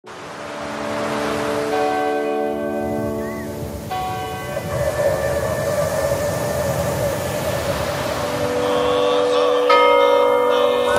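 Bells ringing with long, overlapping sustained tones, a fresh set struck about four seconds in, over a steady wash of noise; a wavering held tone joins about halfway through, as in a soundtrack.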